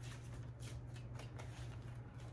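A deck of tarot cards being shuffled by hand, overhand, with a soft, irregular patter of cards slipping and tapping against each other several times a second. A steady low hum runs underneath.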